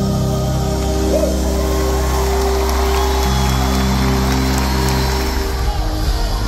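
Live worship band in an arena holding long sustained chords over a deep steady bass, the chord shifting about halfway through, with crowd noise underneath; near the end the texture turns rhythmic as the beat comes in.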